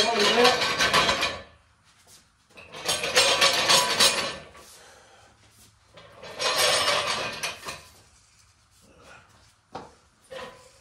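Metal wheel dollies rattling and rolling on their casters across a concrete floor as they are set in place, in three separate bursts of about a second and a half each.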